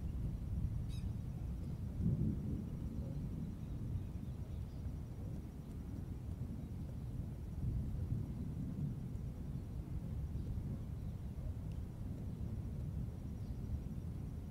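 Outdoor ambience: a low, uneven rumble, with a brief faint click about a second in.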